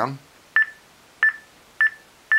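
Contour Surface Sound Compact Bluetooth speakerphone beeping once for each press of its volume-down button: three short, high beeps about two-thirds of a second apart.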